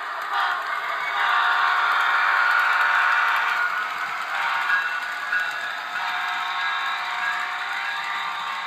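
Model diesel locomotive and its cars running on three-rail model railroad track, a steady rumble and clatter of wheels and motor. It is louder from about one to four seconds in.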